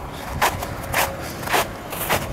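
Footsteps in snow at a steady walking pace, about two steps a second.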